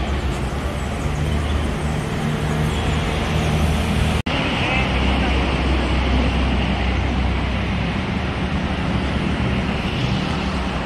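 Steady road traffic from cars going by on a street, with a low engine hum underneath. The sound cuts out for an instant about four seconds in.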